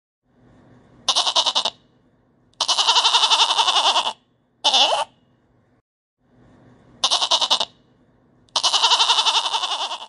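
Goat kid bleating five times, short and long calls with a rapid quaver, a second or two apart.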